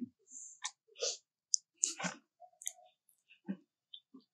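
Scattered short clicks and crunches at an uneven pace: a macaque eating kernels from a corn cob.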